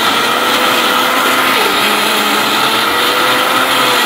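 Electric mixer grinder running steadily at high speed, grinding wet spices into a masala paste in its stainless-steel jar. The motor pitch wavers slightly as the load shifts.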